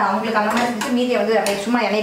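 Metal pots and kitchen utensils clinking on a gas stove, a few sharp clinks, with a woman talking over them.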